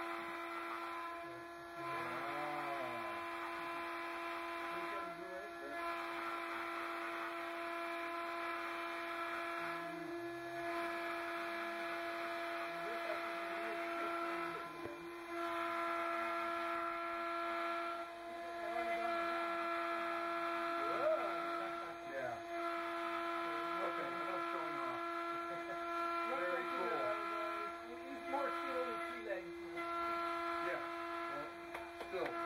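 A steady electrical hum holding one pitch with a ladder of overtones, briefly dipping a few times. Faint conversation sits in the background.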